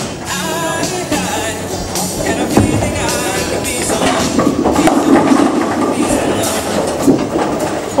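Bowling ball rolling down a wooden lane with a low rumble that builds in the middle, over background music playing in the alley, with a few short knocks.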